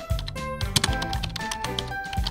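Background music with a steady beat: bass, percussion and melodic notes.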